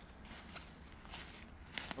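Faint footsteps crunching through dry fallen leaves, a few irregular steps.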